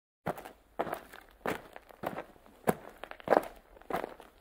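Seven heavy thuds at an even walking pace, about one every two-thirds of a second: an intro sound effect.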